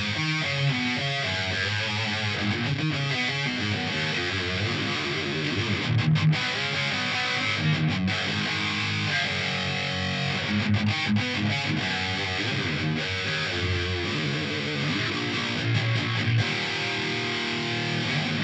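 Electric guitar through the Otto Audio 1111 amp-sim plugin, playing a heavy metal riff with very high-gain distortion.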